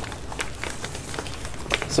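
Soft handling noise from a fabric zip pouch stuffed with papers being moved and lifted: faint rustling with a couple of small clicks.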